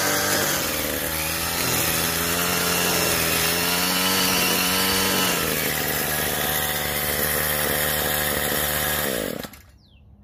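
Troy-Bilt TB80EC 27cc two-stroke string trimmer engine running, revving up and down on a test run after its gearbox was replaced. It shuts off about nine seconds in, dropping in pitch and stopping abruptly.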